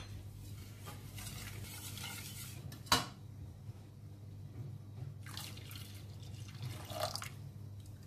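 A wire whisk stirring a milk mixture in a stainless steel pot, then one sharp metal clink about three seconds in as the whisk is set against the pot. After that, milk is poured into the pot in two short pours.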